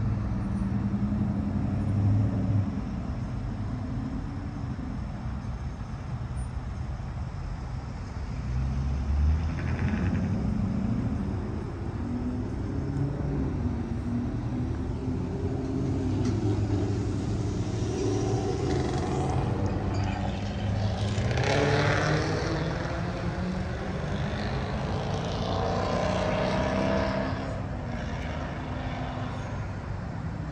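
Motor vehicle engines running nearby: a low steady hum throughout, with the pitch rising and falling in the second half as vehicles move about.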